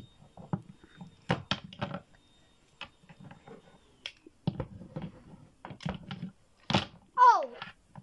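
Plastic wrestling action figures knocked and stomped against a toy stage floor: a run of short, irregular knocks and taps. About seven seconds in, a child's voice glides down in pitch as a sound effect.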